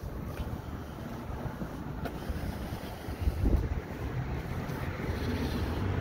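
Wind buffeting the microphone, a low rumble that swells in a stronger gust about halfway through.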